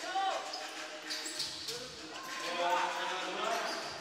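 A basketball being dribbled on a hardwood court in a large indoor gym, with players' voices calling out during play.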